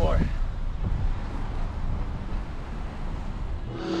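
A car moving slowly past, heard over steady outdoor noise with rumble on the microphone.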